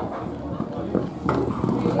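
Ponies galloping on a sand arena: irregular hoofbeats, with a sharper knock about a second in. Voices are heard faintly behind.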